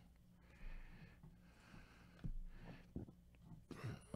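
Faint soft rustles and light clicks of trading cards being shuffled and slid in gloved hands, over a low steady hum.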